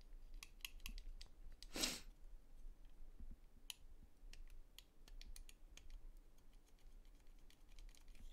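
Faint, scattered clicks and taps of small plastic model-kit parts being handled, with one short louder rustle about two seconds in.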